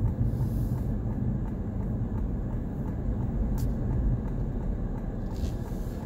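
Steady low rumble of engine and road noise heard from inside a car's cabin as it drives through a right turn, with one brief click about three and a half seconds in.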